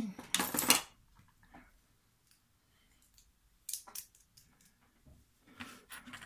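Metal clattering and clinking of hand tools and a small brass lock cylinder being handled. There is a loud burst of clatter in the first second, then a few scattered light clicks.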